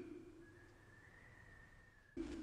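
Near silence: a voice fading out at the start, then a faint, thin, steady high tone.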